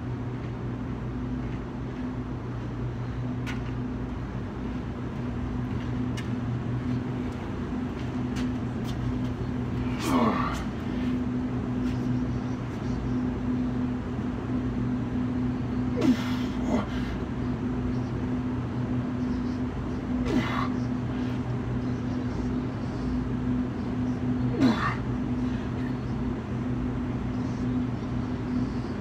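Steady low hum, with short grunting exhales that fall in pitch every four to six seconds from a man doing push-ups.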